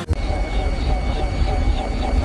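Steady engine and rotor noise from the PAL-V gyrocopter flying car: a continuous low rumble under a broad hiss.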